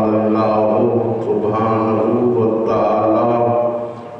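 A man's voice chanting an Arabic recitation in long, drawn-out notes, with a brief pause at the very end.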